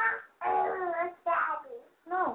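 A young child's voice over a telephone line, in three drawn-out, sing-song stretches with held notes.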